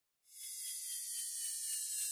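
A soft hissing swish of an editing transition sound effect, starting about a third of a second in, with faint tones sliding slowly downward under the hiss.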